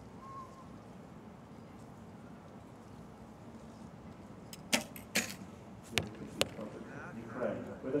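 Steady low outdoor background, then four sharp clacks in under two seconds about halfway through, from arrows being shot and striking the target. A commentator's voice comes in near the end.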